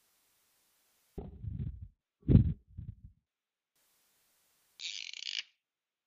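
A few dull low thuds in the first half, then a short scratchy stroke of a dry-erase marker on a whiteboard about a second before the end.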